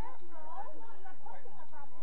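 Several voices calling and talking over one another, too indistinct to make out: footballers on the pitch during play.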